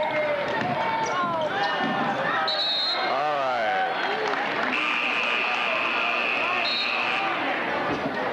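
Basketball game in a gymnasium: sneakers squeaking on the hardwood floor amid shouting voices, then a long, steady, high referee's whistle blast from about five to seven seconds in.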